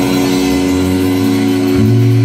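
Live blues band's electric guitar and bass guitar holding sustained chords with no drum hits, a new lower bass note entering near the end.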